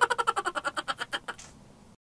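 A comic sound effect: a rapid run of short pitched buzzing pulses, about a dozen a second, that fades away over about a second and a half.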